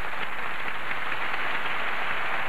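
Studio audience applauding, a dense, steady clapping.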